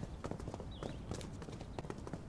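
Faint, quick footsteps of a person running away, a rapid irregular patter of light steps. A brief high chirp comes a little under a second in.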